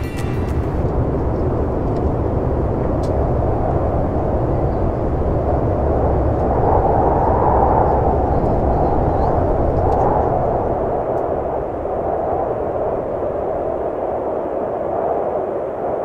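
Steady, loud roar of a jet airliner heard from inside the cabin, swelling a little around the middle.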